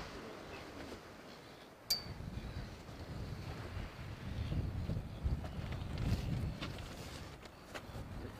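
Wind buffeting the outdoor microphones: an uneven low rumble that swells and falls in gusts. A single sharp click comes about two seconds in.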